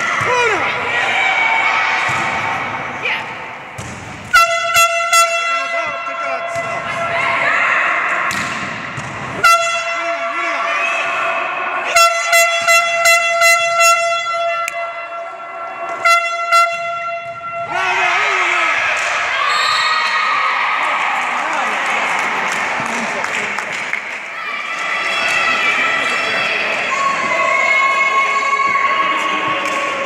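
An air horn sounding in groups of short, steady, single-pitch blasts: a few toots about four seconds in, a longer blast near ten seconds, a quick run of about five toots, then two more. It sounds over continuous crowd voices and shouting in a gymnasium.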